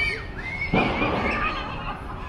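Children's high-pitched voices calling and squealing at play, with a louder shrill cry just before halfway.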